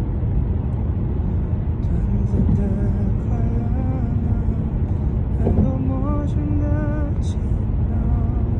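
A man singing softly a cappella, half-mumbling the words of a Mandarin pop ballad in two short phrases, over the steady low rumble of a car cabin.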